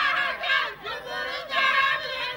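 Group of men singing izlan, Amazigh sung verse, several voices together holding and bending long notes, with a brief break a little before the middle.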